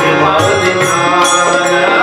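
A man singing a devotional song with tabla accompaniment and hand-clapping keeping time.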